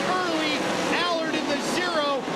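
A pack of 410 winged sprint cars racing at full throttle. Several engine notes overlap, each pitch falling and rising as cars pass and get on and off the throttle through the turns.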